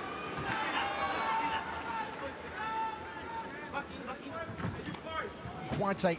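Shouting voices from an arena crowd, several at once with no clear words, including a couple of long held calls.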